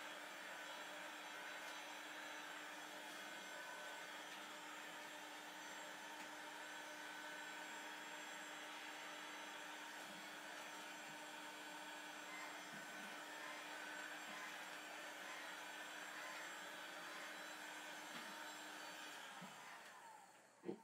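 Electric heat gun running steadily and faintly, a fan whir with a low hum, blown over freshly poured epoxy resin varnish to warm it so it thins, levels out and its bubbles burst. It switches off just before the end.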